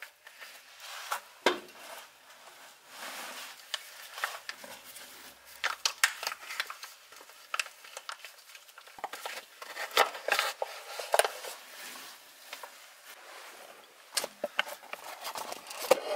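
Irregular light clicks, taps and crinkles of hands working at a Toyota Tundra's front differential, squeezing and handling a flexible plastic gear oil pouch.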